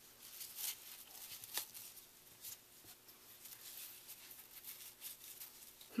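Faint rustling and a few soft ticks of a ribbon being handled and wrapped around a paper layout by hand.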